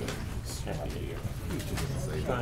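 Indistinct murmur of several voices talking at once in a large room, over a steady low hum.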